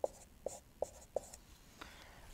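Dry-erase marker squeaking on a whiteboard in four short writing strokes, about three a second, then fading to faint rubbing.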